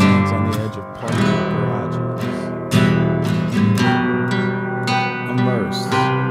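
Recorded rock music: an acoustic guitar strumming chords, with a few short sliding notes on the strings.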